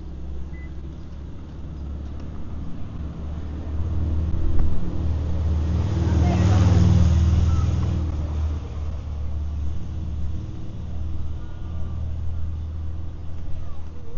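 Road traffic: a car passes close by, growing louder to a peak about halfway through and then fading, over a steady low engine hum.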